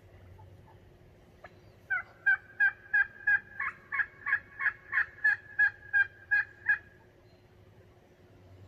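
Turkey calling: a run of about fifteen evenly spaced notes of the same pitch, about three a second, starting about two seconds in and stopping near seven seconds.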